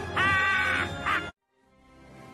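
Film soundtrack played backwards: music under a loud, harsh, held tone about half a second long, then a shorter one. The sound then cuts out suddenly and swells back in slowly.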